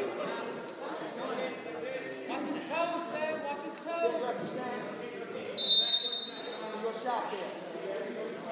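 A referee's whistle gives one short shrill blast about five and a half seconds in, restarting the wrestling, over people's voices.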